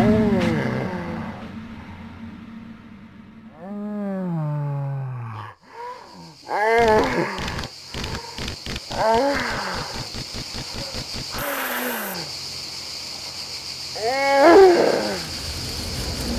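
A series of wavering, animal-like cries and growls whose pitch bends and slides down, one every few seconds. From about six seconds a steady high hiss sets in, and a quick run of clicks follows for a few seconds.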